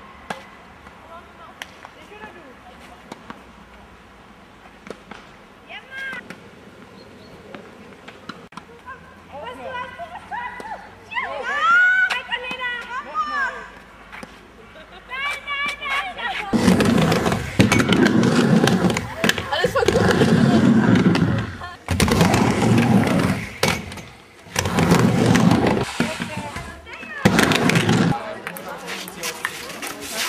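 Tennis balls struck with rackets in a rally, a scatter of sharp hits, with young voices calling out around the middle. From a little past halfway, loud dense stretches of noise, broken by short gaps, take over and are the loudest sound.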